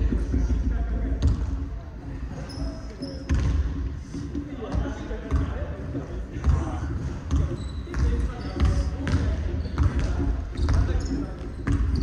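Basketballs bouncing irregularly on a hardwood gym floor, echoing in a large sports hall, with scattered short high sneaker squeaks and players' voices.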